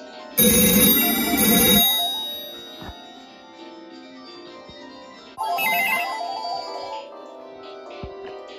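Several landline telephones ringing at once. A loud double ring comes about half a second in, and a warbling electronic ring runs from about five and a half to seven seconds, over a steady mix of electronic ringtones.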